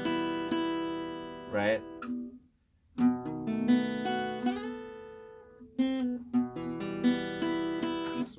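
Acoustic guitar playing a picked riff: single notes plucked one after another and left ringing, with a short break about two and a half seconds in before the picking starts again.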